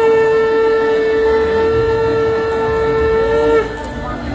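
Conch shell (shankha) blown in one long steady blast lasting nearly four seconds and breaking off just before the end, as an auspicious sound during the ritual welcome of the groom.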